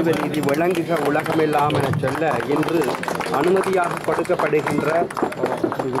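Voices of people in a crowd talking, with a steady low hum underneath.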